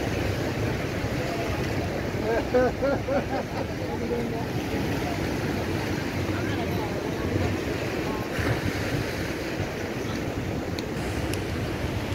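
Steady rush of sea surf and wind noise on the microphone, with voices of people nearby chatting around two to four seconds in.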